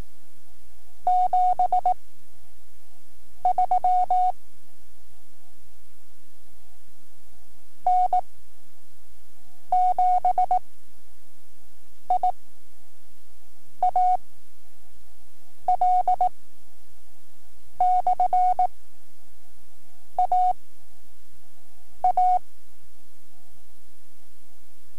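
Morse code sent as a single steady beep tone, slow novice-level code practice: short groups of dots and dashes, one character about every two seconds, with long gaps between characters. A faint steady hum from the tape runs underneath.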